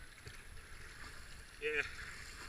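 Rushing whitewater of a river rapid around a moving kayak, a steady hiss of foaming water, with low wind rumble on the helmet-camera microphone.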